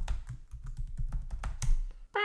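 Computer keyboard keys typed in a quick run of clicks as a sudo password is entered at a terminal prompt.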